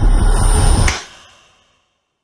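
Loud, bass-heavy trailer score and sound design that ends on a sharp hit about a second in, then dies away to silence.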